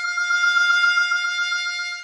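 A single note held on a harmonica cupped in both hands. The right hand opens and closes repeatedly to give a wavering, vibrating hand-vibrato effect.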